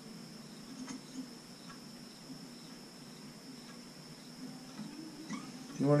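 Quiet workbench room tone: a steady faint high-pitched whine over a low hum, with a few faint clicks as a jeweler's saw frame and blade are handled.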